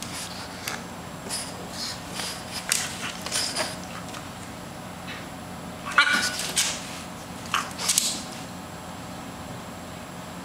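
French bulldog licking and nibbling at her paw: a run of short, irregular mouth noises, with a louder cluster about six to eight seconds in, then quiet for the last two seconds.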